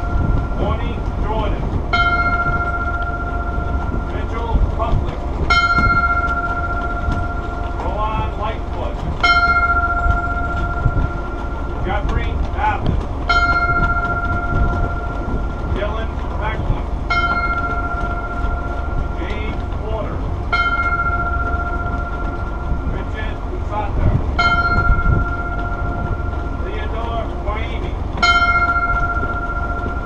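Ship's bell tolled eight times in memorial, one stroke about every three and a half to four seconds, each ringing on for about two seconds. A voice speaks quietly between the strokes over a steady low rumble of wind and ship noise.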